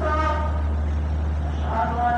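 A voice chanting in long held, slowly wavering notes, with a steady low hum underneath.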